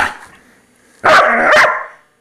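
Standard poodle barking at a grooming brush held to its face: one short sharp bark at the start, then a louder, longer double bark about a second in.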